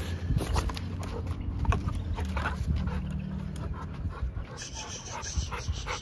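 Bully-breed dog panting hard during a tug-of-war game, heavier near the end, with scattered short clicks and rustles from the play.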